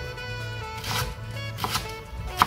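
Chef's knife slicing through a leek onto a wooden cutting board: two sharp cuts, about a second in and near the end, over background music.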